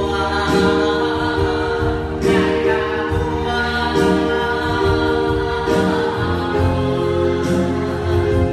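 Worship song sung by a group in Vietnamese, led by a male singer on a microphone, with electronic keyboard accompaniment; sustained chords change about every two seconds.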